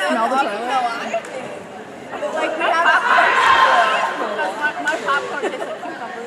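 Several people chatting at once, overlapping voices with no single clear line of speech.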